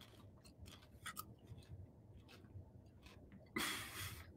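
Faint scattered clicks and rubbing of handling noise close to the microphone, with a short burst of rustling noise about three and a half seconds in.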